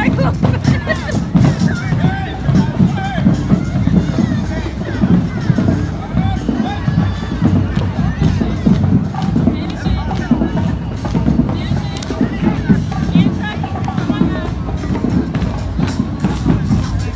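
Loud parade music with drums and a heavy low beat, mixed with a crowd's chatter and voices.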